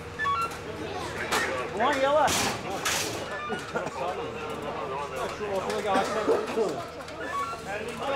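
Several people's voices calling and talking over one another, unclear, with a few sharp knocks about two to three seconds in.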